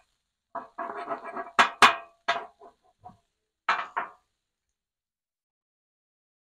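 Metal spatula chopping down through hash browns onto the Blackstone griddle's steel top: a few sharp clinks and knocks, two in quick succession about one and a half seconds in and two more near four seconds, then the sound cuts out to silence.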